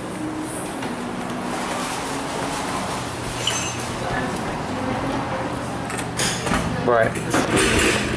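Coffee shop room noise: a steady low hum under a constant wash of background noise and indistinct voices.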